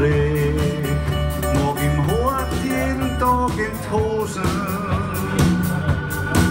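Live blues-rock band playing an instrumental break between verses. Drums keep a steady beat under bass and acoustic guitars, and a lead line plays bent, sliding notes with a wavering held note near the end.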